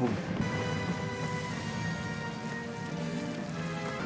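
Film score playing: sustained, held notes layered into a slow, steady chord.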